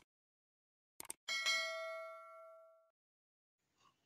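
Subscribe-button animation sound effect: two quick mouse clicks about a second in, then a bell ding that rings on and fades away over about a second and a half.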